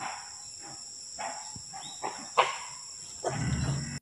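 Dholes (Indian wild dogs) giving short, sharp yelping calls as they mob a tiger, the loudest call about two and a half seconds in. A steady high insect drone runs underneath, and a fuller, low-pitched sound joins near the end.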